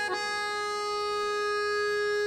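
Harmonium settling onto a single note and holding it steadily, the reeds giving one long, even tone.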